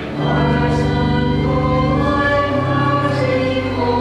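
A choir singing slow sacred music in long held chords, moving to a new chord every second or two.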